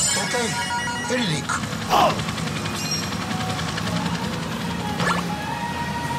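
Pachinko machine's electronic sound effects and jingle music with short voice snippets, over the general din of a pachinko parlor; a brief louder effect sounds about two seconds in.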